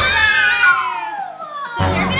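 Girls shrieking in shocked surprise: one long high-pitched cry that slides down in pitch, over background music.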